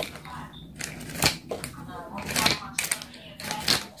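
Plastic nail practice fingers clicking and knocking against each other and a clear plastic container as they are handled and packed away, a series of sharp, irregular clicks.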